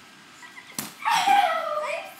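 A short knock, then a loud high-pitched whining cry that falls in pitch over about a second.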